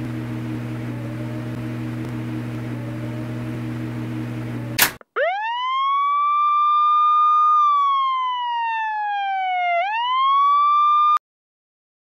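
A steady low electrical hum of room tone, ended by a click about five seconds in. Then a siren wail rises quickly, holds, slowly falls, swoops back up and cuts off suddenly about a second before the end.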